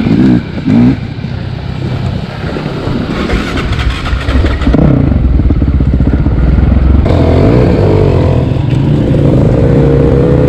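Off-road dirt bike engines running as the bikes are ridden over a rough trail, the revs rising and falling with the throttle. There are loud surges about half a second in, and the engine sound changes abruptly twice along the way.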